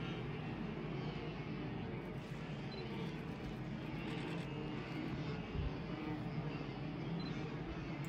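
A steady, even low rumble with a faint hiss above it, with no distinct events, as from the live outdoor recording.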